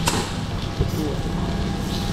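Busy dining-room ambience: indistinct voices over a steady low hum, with a sharp click at the very start.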